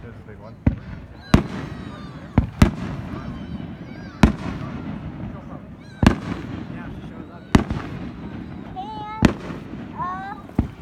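Aerial fireworks shells bursting, about eight sharp bangs at uneven intervals.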